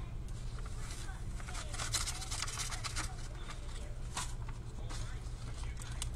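Plastic bag rustling and crinkling in short irregular bursts, densest a couple of seconds in, as craft items are put back into it, over a steady low hum.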